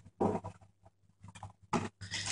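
Wrapping paper rustling in two short bursts as a present is pulled out of it, the first just after the start and the second near the end.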